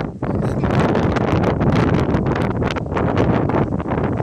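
Wind buffeting a phone's microphone: a loud, steady rush with gusty crackle, heaviest in the low end, with a brief drop right at the start.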